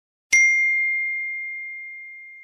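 A single bright bell-like ding, struck about a third of a second in and ringing down slowly: an edited-in sound effect.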